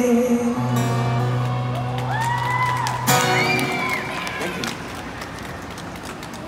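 Acoustic guitar's final chord ringing out at the end of a song, with the singer's last held note fading in the first second. This is followed by scattered audience applause and two rising-and-falling cheers.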